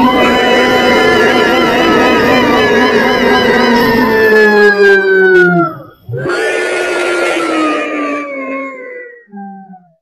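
Electronically pitch-shifted cartoon singing voice holding a long note that slowly slides down in pitch and breaks off near six seconds. A second falling note follows and fades by nine seconds, then a short last one.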